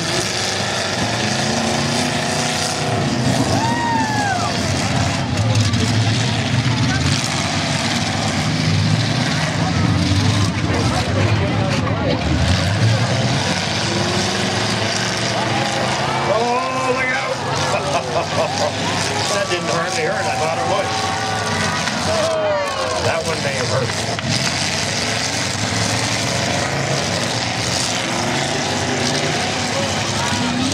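Engines of demolition-derby pickup trucks running and revving in the arena, with voices mixed in.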